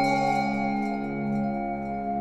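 Slow, calm background music. A bell-like note rings out and fades over a low tone that swells and fades in slow pulses.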